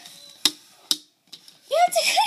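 Two sharp plastic clicks about half a second apart, with a fainter one after, from the BeanBoozled spinner's button being pressed.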